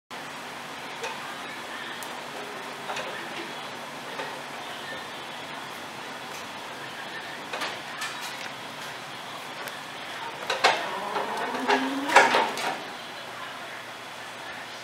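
Scattered knocks and clanks over steady background noise, coming thicker and louder about ten to thirteen seconds in, with a brief rising tone among them.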